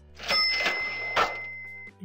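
Cash-register "ka-ching" sound effect: a rattling burst with a bell ringing over it, a second sharp hit a little after a second in, and the bell tone ringing out until just before the end.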